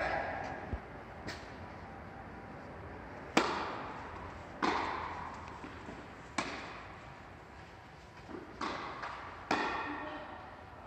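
Tennis ball struck back and forth with rackets in a doubles rally: about five sharp hits a second or two apart, the loudest about three seconds in, each ringing on in the echo of the large indoor hall.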